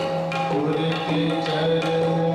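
Sikh kirtan music: tabla strokes under held harmonium notes that step from pitch to pitch over a steady low drone.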